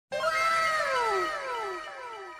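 An edited-in sound effect: a meow-like call that rises slightly and then falls, repeated by an echo about twice a second and fading away.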